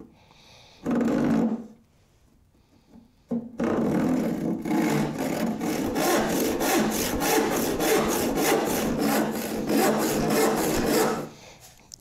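Rip hand saw cutting a board along the grain: one short stroke about a second in, then after a pause steady back-and-forth sawing in a quick, even rhythm, stopping shortly before the end.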